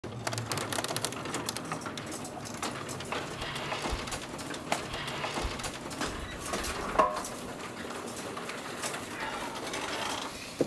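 Outdoor ambience with birds calling and scattered light clicks and knocks, plus one louder short sound about seven seconds in.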